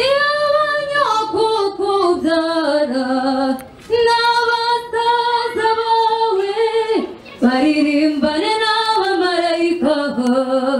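A woman singing a slow, drawn-out melody with long held notes, in three phrases separated by brief pauses for breath.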